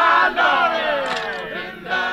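Prison inmates singing unaccompanied together on a 1947–48 field recording. Several voices hold a long line that slides down in pitch and fades, and the next line starts near the end.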